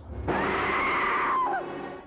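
A woman screaming: one long, high cry that falls in pitch and fades about a second and a half in.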